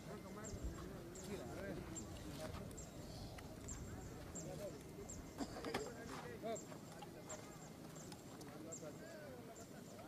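Several men's voices talking indistinctly in the background, with a faint high tick repeating about one and a half times a second.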